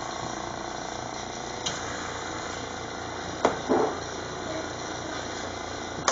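Small vacuum pump running steadily, drawing vacuum on a restored vacuum-operated windshield washer pump, with a single sharp click about a third of the way in and a brief knock a little past halfway.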